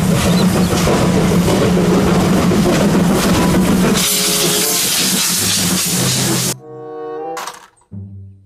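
Steam locomotive running close by, a loud, dense, noisy sound that turns hissier about four seconds in. Near the end the noise stops and a short pitched passage of several tones follows.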